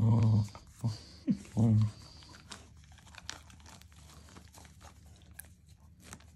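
Faint crinkling and small scattered clicks as the puppy mouths a soft toy basketball and the paper label stuck to it, after a few short, low hummed voice sounds in the first two seconds.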